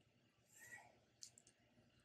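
Near silence: room tone, with a faint rustle about half a second in and three or four faint clicks a little past the middle.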